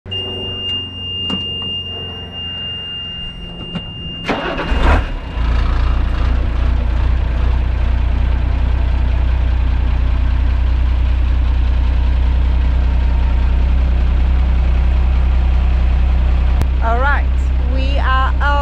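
Unimog truck's diesel engine cranked and catching about four and a half seconds in, then idling steadily with a deep, even hum. Before the start a steady high-pitched tone sounds with a few clicks.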